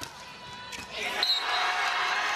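A volleyball is struck with a sharp smack about three quarters of a second in, and arena crowd noise swells loudly from about a second in and holds. A brief high squeak sits just after the swell begins.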